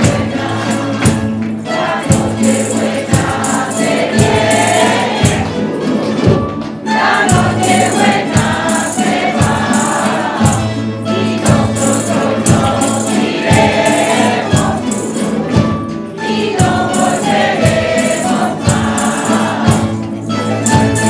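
Folk choir singing a Christmas carol in unison phrases, with strummed guitars and lutes and hand percussion keeping a steady beat.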